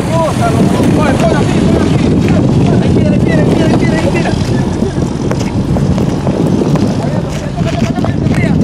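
A heavy dump truck's engine rumbling close by as it passes, with indistinct shouting voices scattered over it.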